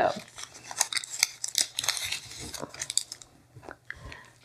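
Irregular rustling and light clicks of hands handling cake-decorating supplies.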